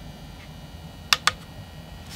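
Two quick clicks about a second in, a fraction of a second apart: push buttons on an Opus BT-C3100 battery charger being pressed while setting up a discharge test of a cell.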